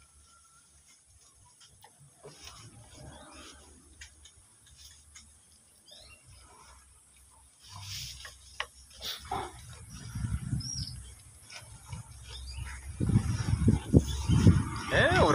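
Goats feeding on a pile of fresh leafy fodder: soft rustling, tearing and crunching of leaves as they pull and chew. Low rumbling grows louder over the last few seconds.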